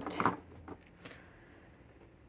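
Faint scratching and light ticks of a pen writing on the paper of a Hobonichi Weeks notebook, after a short rustle at the start.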